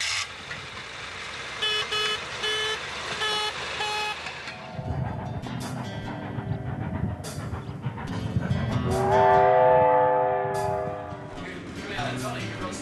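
About five short pitched toots, followed by the low rumble of a train running. Then comes a long, loud chime steam whistle blast from the Baldwin-built steam locomotive No. 18, near the end.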